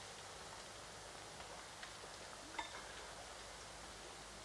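Faint steady hiss with two soft clinks of a metal spoon against a dish, under a second apart near the middle.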